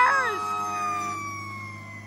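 Fire engine siren as the truck moves away: a short downward sweep, then a steady tone sliding slowly down in pitch and fading.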